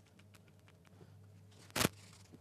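A single sharp hammer tap on the copper scratchplate near the end, knocking flat a spot left raised where the plate was drilled through; faint small clicks before it.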